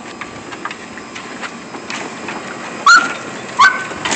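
Two large Lab-mix dogs wrestling on a wooden deck, scuffling and clicking, then a dog gives two loud, high-pitched yelps near the end, under a second apart.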